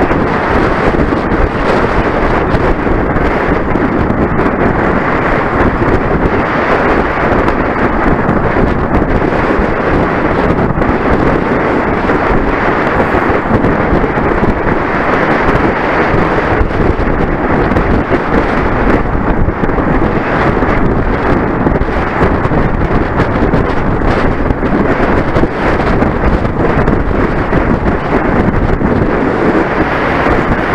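Wind buffeting the microphone of a camera on a racing bicycle moving at race speed in a pack: a loud, steady rushing noise.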